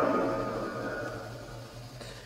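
Spirit box output through a loudspeaker: static-laden sweep noise with faint broken voice fragments, fading away steadily over the two seconds.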